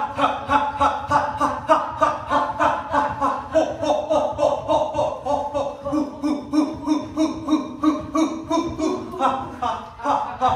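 A man's voice chanting 'ha' over and over in a quick, even rhythm, about three to four a second, a laughter-like shout pushed out in time with bouncing on his feet.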